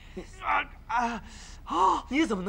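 A man's short pained gasps and cries, three in quick succession, the last one longer with a rising and falling pitch.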